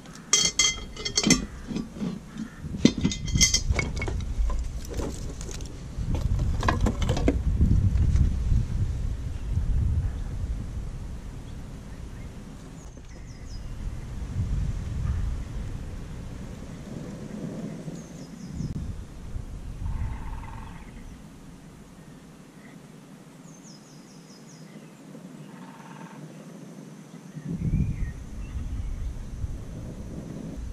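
Split wooden kindling clattering and snapping as it is handled and fed into a Prakti wood stove, a run of sharp clicks in the first few seconds. After that, several spells of low rumbling air noise on the microphone come and go.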